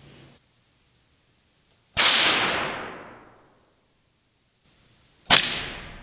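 Two blasts of compressed CO2 gas from a fire-extinguisher-fed launcher tube firing straws at a pineapple: about two seconds in, a sudden burst of hissing that dies away over about a second and a half, and near the end a second, sharper shot that fades more quickly.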